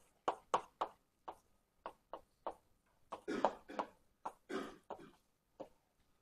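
Writing on a lecture board: a quick, uneven run of sharp taps and short scratchy strokes, with two longer strokes in the middle.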